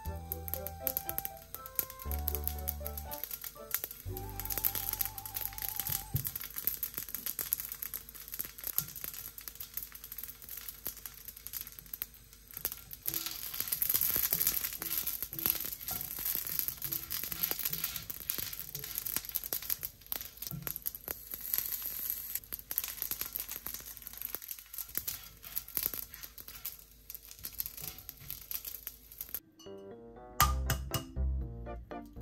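Rice-paper-wrapped sausages frying in a little oil in a cast iron skillet: a steady crackling sizzle that starts a few seconds in and stops suddenly just before the end. Soft background music plays over it, clearest in the opening seconds.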